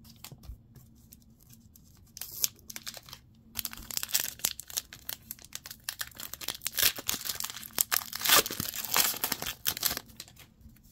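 Foil wrapper of a Pokémon booster pack crinkling as it is handled and torn open. The crackling starts sparse, gets dense from about three and a half seconds in, and is loudest near the end.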